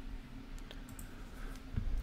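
A few faint, sparse clicks from a computer keyboard being typed on, over a low steady hum.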